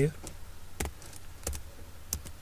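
Two keystrokes on a computer keyboard, about two-thirds of a second apart, typing the last characters of a line of code.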